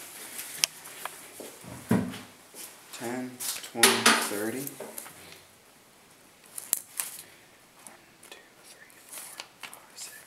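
Arrows being handled at a target, pulled out and clicking and clattering against each other, with a low thump about two seconds in. A man's voice sounds briefly in the middle without clear words.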